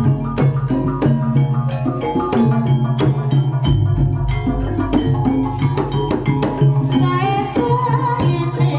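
Live Javanese traditional dance accompaniment, gamelan-style ensemble music: drums keep a steady beat under ringing struck-metal tones.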